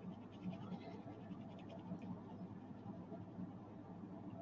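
Pencil scratching on a paper sketch card in quick, short back-and-forth strokes as a dark area is shaded in. It is faint, with the rapid strokes thickest in the first half.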